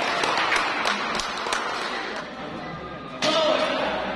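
Several sharp knocks and taps echoing in a large badminton hall during the first second and a half, then men's voices calling out from about three seconds in.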